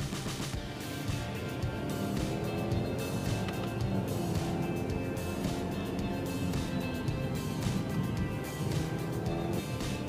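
Background music over the cabin sound of a 2.4-litre turbocharged boxer engine with a CVT, accelerating through paddle-shifted simulated gears, with road noise.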